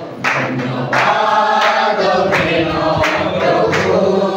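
A congregation singing a hymn together in one voice, with regular hand claps keeping the beat.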